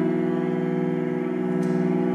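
Solo cello bowing one long held note, its pitch steady.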